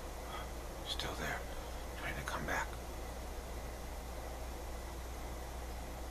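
A man whispering softly in two brief breathy phrases, about one and two seconds in, over a steady low hum.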